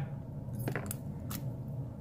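A few light metallic clicks from a brass padlock and lock pick being handled after the lock has been raked open.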